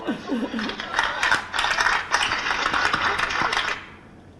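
Audience applauding, many hands clapping together, which cuts off suddenly near the end.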